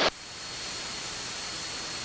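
Steady static hiss on the cockpit's radio and intercom audio, with a faint thin high tone running through it.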